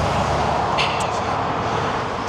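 Road traffic: a steady rush of tyre and engine noise from cars passing on a multi-lane road.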